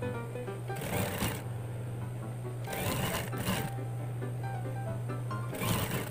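Industrial single-needle lockstitch sewing machine stitching a jersey collar in short runs: one about a second in, two close together around the three-second mark, and one near the end, with a steady low hum between runs. Background music plays throughout.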